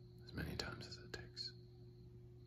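A man whispering a few words, starting about a third of a second in and stopping about halfway through, over a steady faint hum.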